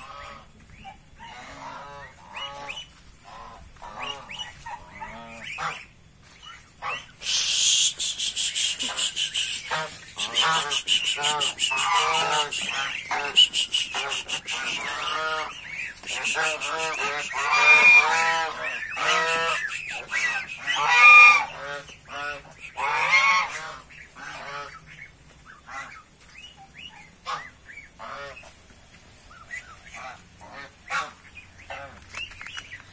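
A flock of domestic geese honking over and over. The calls start out scattered, build to a loud, dense clamour through the middle and thin out again near the end.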